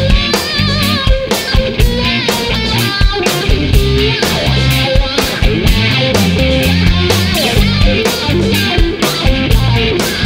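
Instrumental rock passage: a lead guitar plays a melodic line with wavering, vibrato notes over a heavy bass and a steady drum kit beat.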